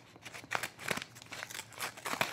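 Brown paper wrapping crinkling and rustling as it is handled and snipped open with small scissors, in irregular sharp crackles.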